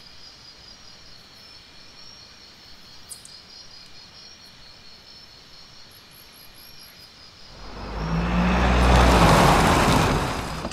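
Night ambience of chirping crickets, then a car approaches after about seven seconds, its engine and tyres growing loud to a peak near the end and easing off as it pulls up.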